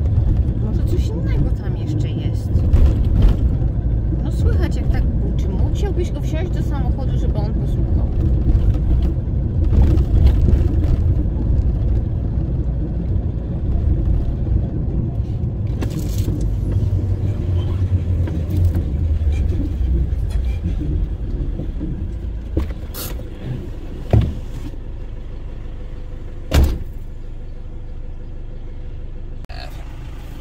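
Toyota Hilux driving slowly through town streets: a steady low engine and road rumble that fades out about two-thirds of the way in. After that come two short sharp knocks a couple of seconds apart.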